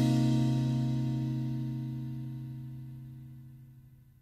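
A band's final chord (electric guitar, bass, synth and drums) ringing out after the last hit, with a cymbal wash, fading away steadily to silence just before the end.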